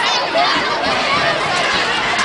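Crowd of football spectators talking and calling out at once, a steady babble of many overlapping voices.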